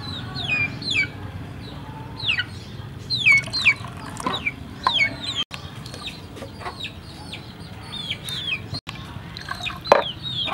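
Chickens calling in the background: short high notes, each falling in pitch, repeated one or two at a time throughout.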